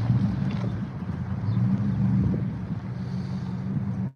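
A vehicle engine running at a steady low idle hum close by, with a little wind noise on the microphone.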